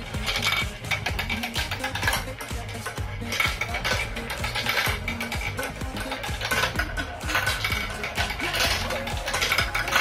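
Marbles rolling and spinning around plastic marble run funnels and down the track, with a steady clatter of many small clicks and knocks against the plastic pieces.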